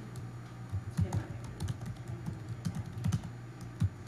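Someone typing on a computer keyboard, a quick irregular run of key clicks, over a steady low hum.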